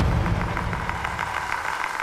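A low, steady mechanical rumble, most of its energy deep in the bass.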